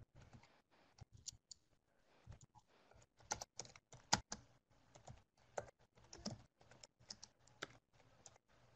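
Faint typing on a computer keyboard: irregular runs of key clicks, a little louder about midway.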